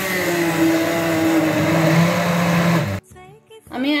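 Stick blender motor running steadily as it purées pineapple chunks in a plastic beaker, then switching off suddenly about three seconds in.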